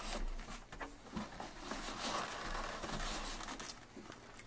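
Soft rustling and scraping of cardboard packaging with a few faint knocks as hands work a glass aquarium out of its box.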